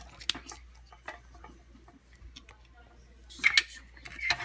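Light clicks and knocks of plastic dolls being handled and set down on a desk, with a louder rustle of handling about three and a half seconds in.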